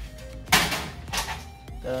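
Metal cookie sheets being set down: a loud hard knock about half a second in and a lighter one about a second in, over background music.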